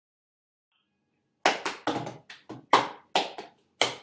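Hand claps and slaps beat out a quick rhythm as the percussion intro of an a cappella song. They start after about a second and a half of silence.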